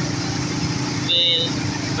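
Auto-rickshaw engine running steadily as it drives along a wet road, with tyre and road noise. A short high-pitched sound comes about a second in.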